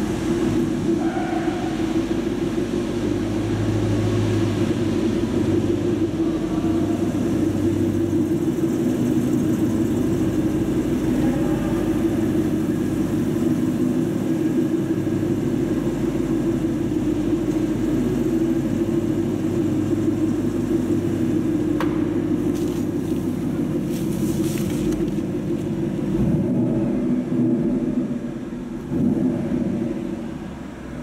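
A 2014 Ford Mustang GT's 5.0-litre V8 idling with a steady low rumble, wavering a little and dipping briefly near the end.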